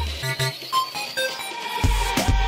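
Club dance music played through a sound system in a DJ set. The kick drum and bass drop out for just over a second, leaving a few short synth notes, then return near the end.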